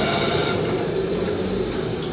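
Hot oil sizzling and bubbling in a deep fryer as bread rolls fry, over a steady low rumble.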